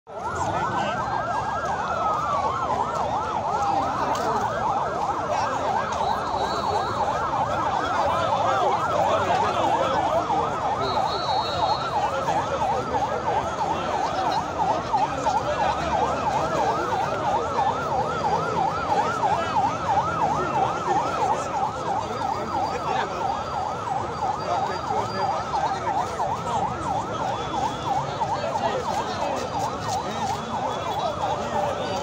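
Sirens sounding continuously: a rapid yelping warble, with a slower wail that rises and falls over it now and then, against the general noise of a large crowd.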